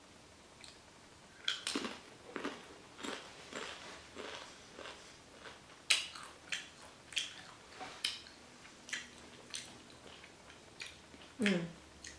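Tortilla chip loaded with salsa being bitten and chewed close to the microphone: sharp crunches come about twice a second, starting about a second and a half in.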